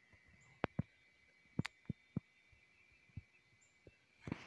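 Mostly quiet, with a faint steady high-pitched hum and about eight light clicks and taps at irregular intervals.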